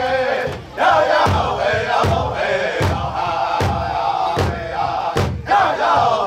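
Powwow drum group singing a women's traditional contest song, the men's voices in unison over a slow, even beat on a large powwow drum, about one stroke every 0.8 seconds. The singing breaks off briefly just before a second in.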